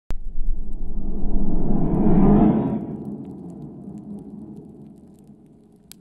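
Logo intro sound effect: a low, rumbling boom that starts suddenly, swells for about two seconds, then slowly fades away.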